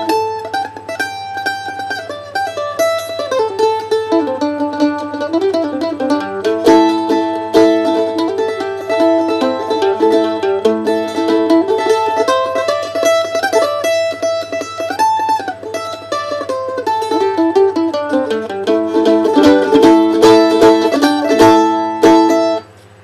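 Collings mandolin played solo: a bluesy, modal jam in A in the blues scale, quick picked runs over open strings that keep ringing.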